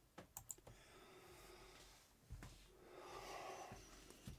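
Near silence with a few faint clicks in the first second, a soft thump about two seconds in, and a faint hiss near the end.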